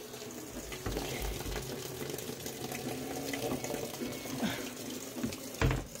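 Water running steadily from a kitchen faucet through a fill hose into the tub of a portable top-load washing machine, filling it for a wash load.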